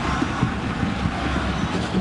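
Steady noise of a large stadium crowd at a soccer match: many voices blended into one even din, with no single shout standing out.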